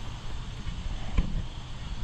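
Handling noise from a camera being adjusted by hand: low rumbling and rubbing against the microphone, with one short knock about a second in.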